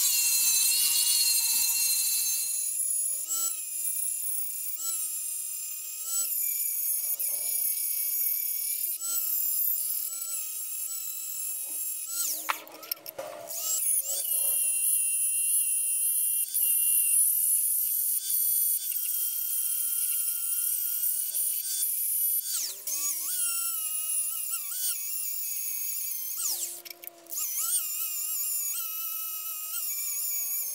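Angle grinder with an abrasive wheel grinding steel rivet pins flush on a knife tang: a high-pitched motor whine that sags in pitch as the wheel bites and recovers when it eases off. The whine breaks off briefly a few times, the longest break about halfway through.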